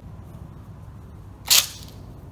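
A single short, sharp swishing snap about one and a half seconds in, as a collapsible metal trick staff is flicked open. A steady low background rumble runs underneath.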